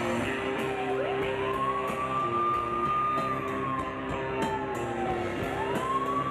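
A gothic rock band playing live, with bass guitar, drums and cymbals steady under a high siren-like wailing tone. The tone rises about a second in, holds, slides slowly down, and climbs again near the end.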